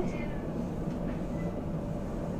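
Steady low rumble heard from inside the carriage of a running Dutch Sprinter stopping train.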